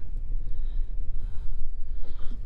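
Wind buffeting a chest-mounted camera microphone: a low rumble that rises and falls.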